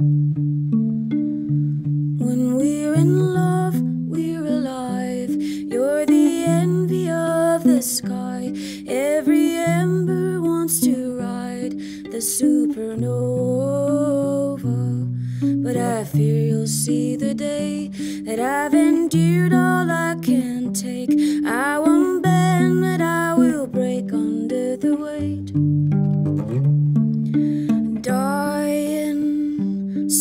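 Solo guitar playing a slow pattern of low sustained notes, with a wordless sung melody that glides and wavers above it.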